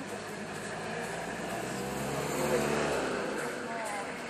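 An engine running steadily as a low hum, swelling a little past the middle and then easing, with faint voices over it.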